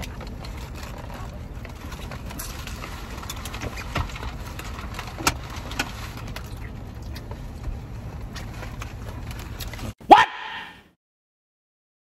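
Steady low hum of a car interior, with scattered crinkles and clicks of a paper food wrapper being handled. Near the end a loud shouted "What?" cuts in, and then the sound drops out completely.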